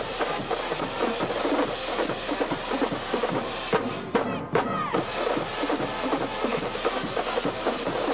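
High school marching band playing: a drumline of snare drums keeping a steady beat under flutes, clarinets and brass.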